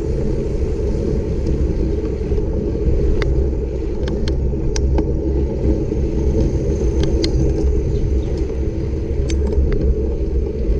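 Steady low rumble of wind on the microphone and bicycle tyres rolling on asphalt during a ride, with light scattered clicks and ticks from the bike.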